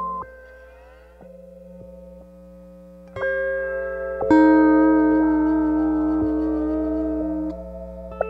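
Lap steel guitar looped and processed through the Critter and Guitari Organelle's Deterior patch: plucked notes ring and sustain, with sliding pitch glides. New notes come in about three seconds in, and the loudest just after four seconds. A low 60-cycle hum from the rig runs underneath.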